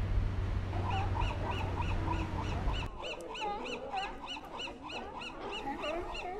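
A bird calling in a fast, even series of short notes, about five a second, over a low rumble that cuts off suddenly about halfway through.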